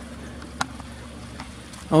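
Steady low hum of outdoor background noise, with one short click a little after half a second in. A man's voice starts at the very end.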